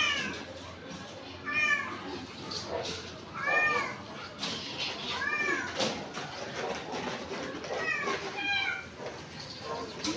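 An animal's short, high-pitched calls, each rising and falling in pitch, repeated about half a dozen times with pauses between.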